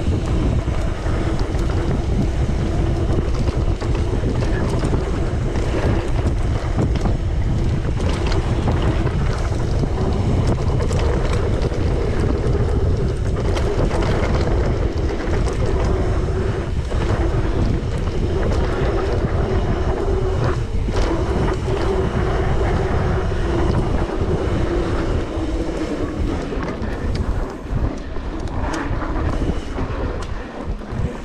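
Wind buffeting the bike-mounted camera's microphone on a fast mountain-bike descent, over the rumble of knobby tyres on a dry dirt trail. The Trek Remedy 8 full-suspension bike keeps up a clatter of clicks and knocks over the bumps. The noise eases and turns uneven near the end.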